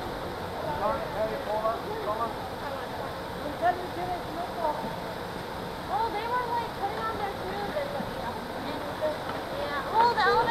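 Indistinct chatter of several people talking at a distance from the microphone, over a steady rushing background noise.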